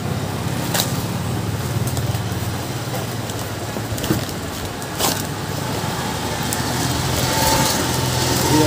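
A steady low mechanical hum, with a few sharp clicks and rustles as a small cardboard box is opened by hand.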